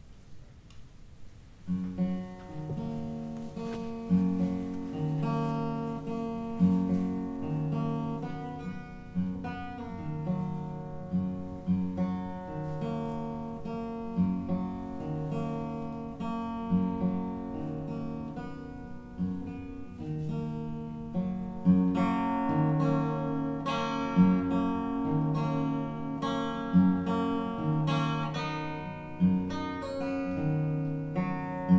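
Solo acoustic guitar starting about two seconds in, playing a slow, repeating pattern of plucked chords.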